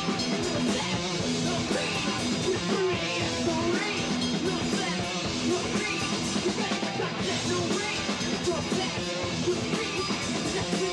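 Live punk rock band playing loud: distorted electric guitars over a full drum kit, without a break.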